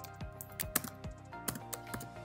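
Computer keyboard keystrokes clicking in an irregular run, over background music holding steady sustained notes.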